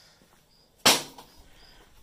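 A single sharp knock a little under a second in, dying away quickly, over faint quiet room tone.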